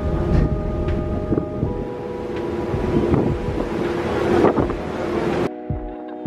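Passenger ferry's engine drone, a steady hum with several held tones, under wind buffeting the microphone. Near the end the sound changes abruptly to a different steady set of tones.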